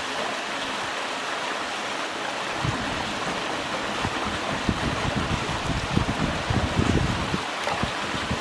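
Steady hiss of meltwater running down inside a hole in the glacier ice. From about a third of the way in, irregular low rumbling gusts of wind buffet the microphone.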